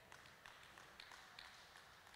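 Near silence: hall room tone, with a few faint scattered clicks.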